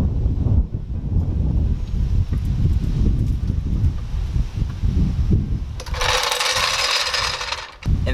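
Wind buffeting the microphone in gusts, with faint work on a floor jack under the car lost beneath it. About six seconds in, the rumble gives way to an even hiss lasting about two seconds, which stops abruptly.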